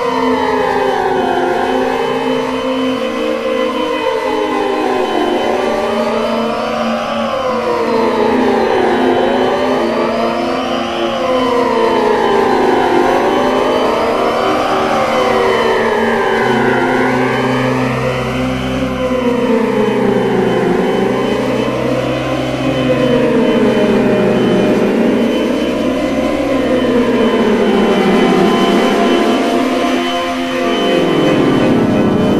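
Experimental electronic music: several layered tones that slide up and down in pitch together, over and over, about every four seconds. A steady low hum joins in about halfway through.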